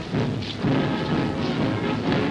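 Military band march music playing steadily on the soundtrack.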